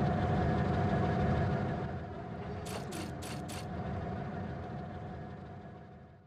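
Steam locomotive shed sound effect: a steady low rumble with a faint hum, four quick hissing bursts of steam about three seconds in, then the sound fades out near the end.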